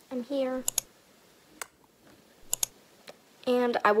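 A girl's voice speaking in short bits at the start and near the end, with a few short, sharp clicks in the quiet pause between.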